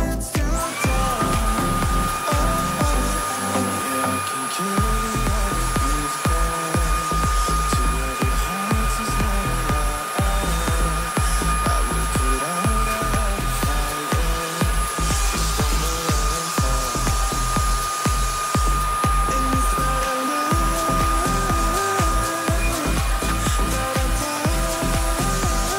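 Upright vacuum cleaner switched on just after the start, its motor spinning up to a steady high whine that holds while it is pushed over the floor. Pop music with a steady beat plays throughout.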